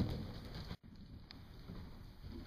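Faint hoofbeats of a horse trotting on soft arena footing over a low background rumble. The sound drops out for an instant just under a second in, then the low rumble carries on.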